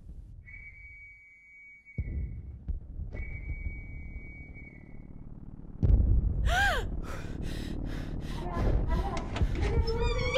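Night air-raid sound effects. Two long, steady high whistle tones of about two seconds each come first. From about six seconds in there is a heavy low rumble with a brief rising and falling whistle, then a rapid run of booms from the bombardment.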